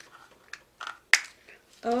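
Paper wrapping being peeled and torn off a small toy capsule in short rustles, with one sharp snap just after a second in. A child says "Oh" at the very end.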